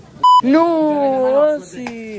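A short, loud, steady censor bleep dubbed into the soundtrack, a single beep of about a fifth of a second with the other sound cut out around it, followed by a man's drawn-out voice.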